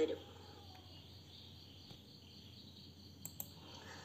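Near silence: faint room tone with a steady low hum and a thin high hiss, and a couple of faint clicks a little past three seconds in.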